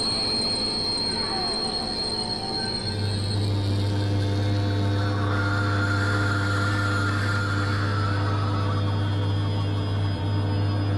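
Experimental synthesizer drone music made of steady, layered tones. A high whining tone fades out about three and a half seconds in, just as a deep low drone comes in and holds. A wavering higher tone enters around the middle.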